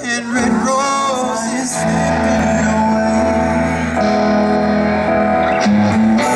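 Live rock band playing electric guitar and bass guitar. A male voice sings a wavering line over the first second or two, then the band holds steady chords over a low bass line.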